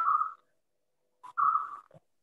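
An animal, likely a bird, calling twice: two short, fairly high calls about a second and a half apart.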